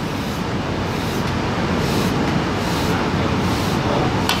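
Steady room noise, an even hum and hiss with no ball strikes or other distinct sounds.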